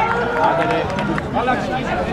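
Men's voices shouting and calling out across a football pitch during play.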